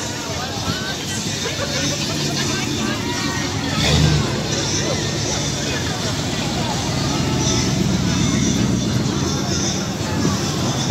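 Engines of classic American cars passing slowly one after another, a low steady rumble with a short louder rev about four seconds in; the rumble grows over the last few seconds as the next car comes close. Crowd chatter runs underneath.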